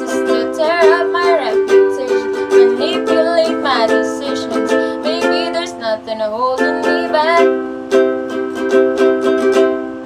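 Ukulele strummed in a steady repeating chord pattern with girls singing along over it; the singing stops about seven and a half seconds in while the strumming carries on.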